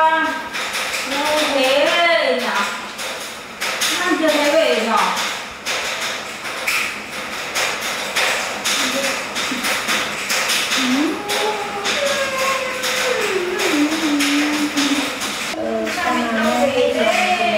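A voice in short sing-song phrases with wide, slow rises and falls in pitch, over light tapping.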